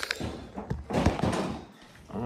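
Handling noise from a phone camera being moved and set down: a few knocks and a rubbing rustle, loudest about a second in.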